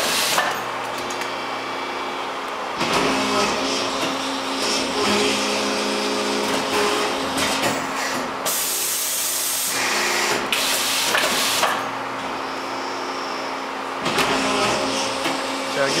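Arburg Allrounder 370C hydraulic injection moulding machine running: a steady hydraulic hum of several held tones, with four or five short surges of louder rushing noise as the injection unit carriage is jogged in and out from the control panel.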